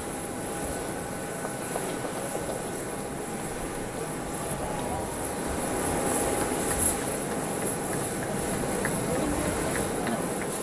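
Steady whine and hum of a parked jet airliner's turbine, with indistinct voices of people close by.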